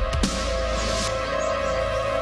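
Tense dramatic background score: a sustained synthesizer drone with held tones, and a brief hiss swelling up in the first second.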